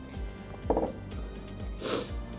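Background music with a steady low beat, about two beats a second. A woman drinking water makes a short gulping mouth sound about two-thirds of a second in, the loudest moment. Near the end comes a sharper knock as the glass is set down on the table.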